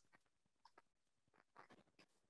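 Near silence: room tone with a few faint, short clicks and rustles.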